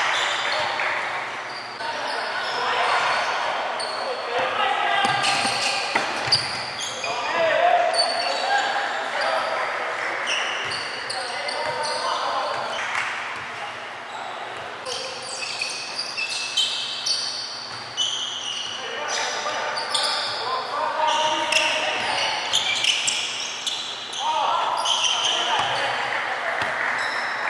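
Sound of a basketball game in a gym: a basketball bouncing on the wooden court, short sharp squeaks and knocks, and indistinct shouting voices, all echoing in the hall.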